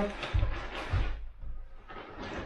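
Plastic carrier bag rustling and crinkling as it is handled and carried, with two dull thumps in the first second.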